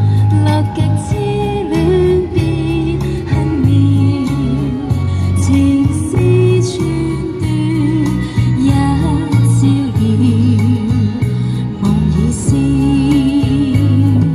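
A woman singing a Chinese pop song live into a handheld microphone over a recorded backing track, both played through a small portable amplifier speaker.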